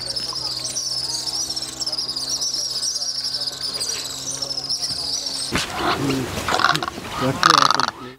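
Outdoor wildlife ambience: a dense, high-pitched chorus of chirping insects and birds over a steady low hum. About five and a half seconds in, a louder, rough rushing noise takes over until the end.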